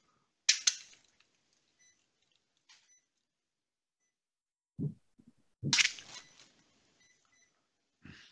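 Mostly silence, broken by a sharp click about half a second in, a short low thump near the middle and a louder knock with a brief rustle just before the end, with a few faint short electronic beeps in between.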